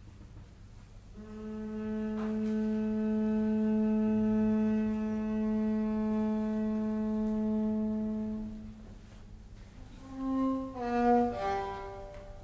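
A bowed string instrument holds one long steady note for about seven seconds, then plays a few short notes at other pitches near the end, the last of them the loudest.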